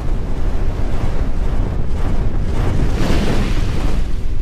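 Logo-reveal sound effect: a loud, deep rushing rumble like a whoosh of wind, swelling about three seconds in.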